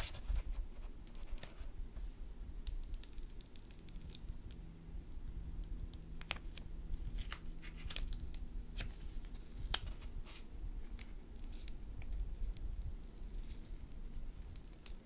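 Paper backing of a vinyl decal being peeled and handled: light paper rustling with scattered small crackles and clicks as the sheets separate.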